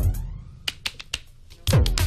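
Korg WaveDrum Mini electronic percussion sounding two deep drum hits whose pitch drops quickly, about a second and a half apart, triggered by taps on its clip sensor. Sharp clicks of the clip being tapped and handled come between the hits.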